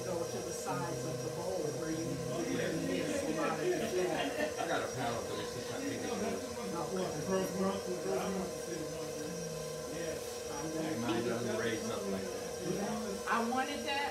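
KitchenAid Pro 600 bowl-lift stand mixer running at a steady speed, a constant motor hum, as it mixes frosting. Indistinct voices run over the hum.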